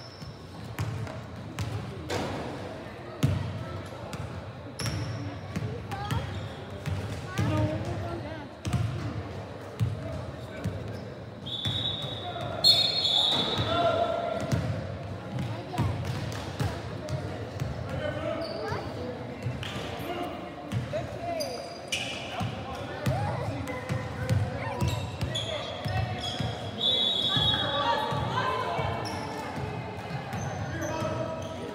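Basketballs bouncing on a hardwood gym floor, irregular thuds from several players dribbling and shooting, heard in a large gym over indistinct chatter.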